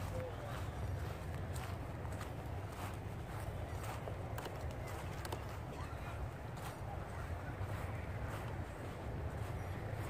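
Footsteps of a person walking over mown grass and dry leaves, soft steps about two a second, over a steady low rumble.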